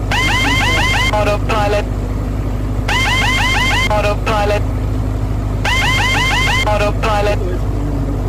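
MD-80-style autopilot disconnect warning in a Diamond DA40 cockpit, signalling that the autopilot has been disconnected: a quick run of about five rising whoops, then a recorded voice saying "autopilot". The cycle repeats three times, about three seconds apart, over the steady drone of the engine and propeller.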